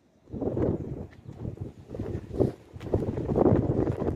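Wind buffeting the microphone outdoors: a low, uneven rumble that starts just after the beginning and grows stronger in gusts toward the end.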